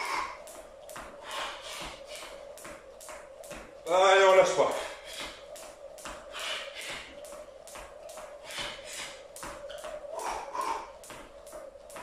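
Jump rope skipped fast on a tiled floor: a quick, even patter of the rope slapping the floor and light landings, several strikes a second, with a faint steady hum underneath.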